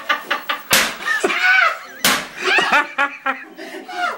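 Two sharp smacks, about a second apart, amid excited men's shouting and laughter.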